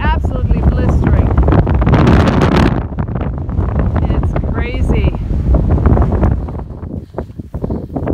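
Strong wind buffeting the microphone in a loud, deep rumble that gusts and eases off somewhat near the end.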